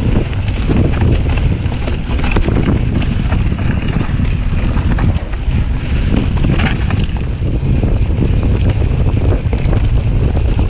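Wind buffeting the microphone of a mountain bike rider's action camera during a fast descent on a dirt trail, a heavy steady rumble with frequent short clicks and rattles from the bike over bumps.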